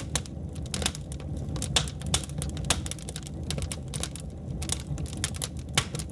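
Crackling fire sound effect: irregular sharp crackles and pops, several a second, over a steady low rumble.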